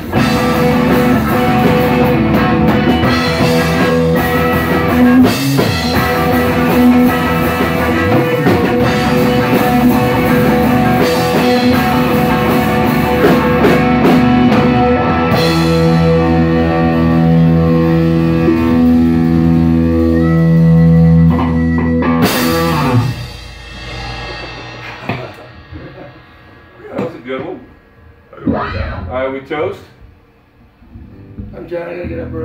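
Live band of electric guitar, drum kit and amplified harmonica playing together. The song ends on a final note about 23 seconds in that rings away, followed by quieter scattered sounds and voices.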